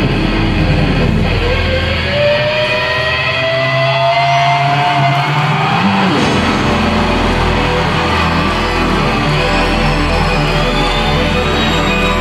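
Instrumental live band music with no vocals. About two seconds in the bass drops away while a held lead note slowly rises, and the full band comes back in about six seconds in.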